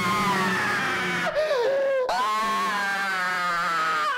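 A man screaming into a close studio microphone. One long held scream, a brief wavering lower cry about halfway, then a second long scream that drops in pitch as it ends.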